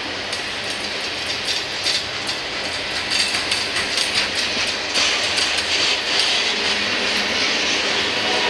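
Norfolk Southern mixed freight train's cars (refrigerated boxcars and covered hoppers) rolling past close by: a steady rush of steel wheels on rail with repeated clacks over the rail joints, louder from about three seconds in.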